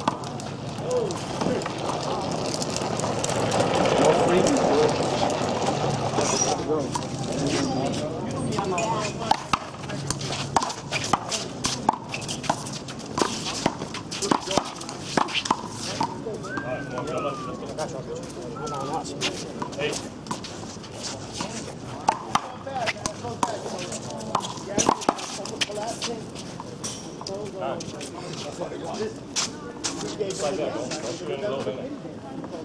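One-wall handball play: a rubber handball slaps sharply and repeatedly against hands, wall and court. Voices talk and shout throughout, louder about 3 to 6 seconds in.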